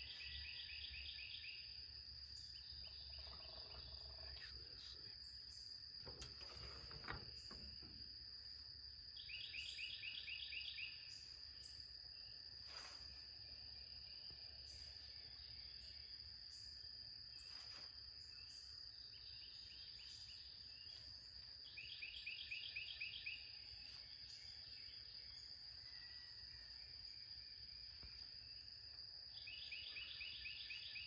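Faint outdoor insect chorus: a steady high-pitched whine. A louder rapid pulsing trill comes back five times, every few seconds. There are a few faint soft knocks.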